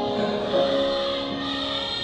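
Piano played slowly, with a man's voice singing along in long held notes.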